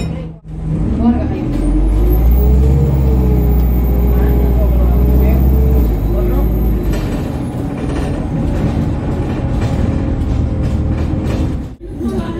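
ADL Enviro200 bus with an Allison automatic gearbox, heard from inside the saloon, its engine running at high revs under way. A deep rumble is strongest from about two to six seconds in, and a high whine rises and falls over the same stretch.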